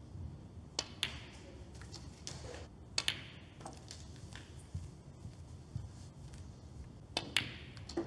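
Snooker balls being played: three pairs of sharp clacks a few seconds apart, the cue tip striking the cue ball and the cue ball hitting an object ball, each with a short ring in the hall.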